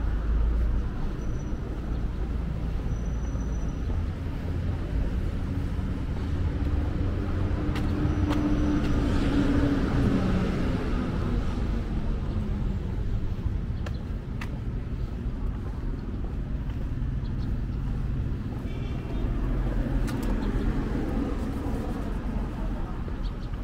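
City street traffic: a steady rumble of vehicles on the road. About midway one engine passes close, louder for a few seconds, and its pitch drops as it goes by.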